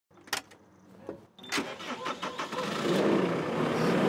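A sharp click of the cab door latch, then about a second and a half in the farm vehicle's engine cranks and starts, settling into a steady run that grows louder toward the end.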